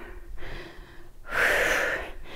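A woman breathing hard with exertion during a weighted squat: a faint breath about half a second in, then a louder, sharp breath through the mouth lasting under a second.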